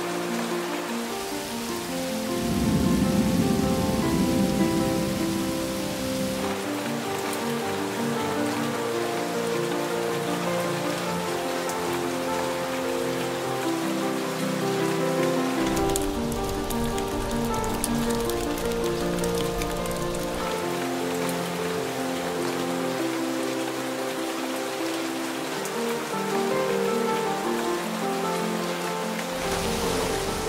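Steady rain falling, with slow instrumental background music over it. A low rumble swells about two seconds in and fades by about six seconds.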